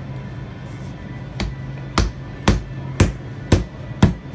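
Rubber mallet striking the handles of the wedge knives driven into a Parmigiano Reggiano wheel, splitting the cheese. A lighter knock comes first, then a string of sharp strikes about twice a second.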